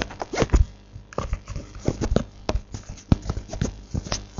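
Irregular clicks and knocks from hands fumbling close to the microphone, with no guitar playing.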